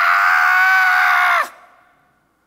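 A man's long, high-pitched scream, held at one pitch for about a second and a half, then cut off, leaving a short echo of the hall.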